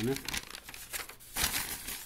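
A sheet of graph paper being handled and laid down, rustling and crinkling in two stretches: just after the start and again through the last half second or so.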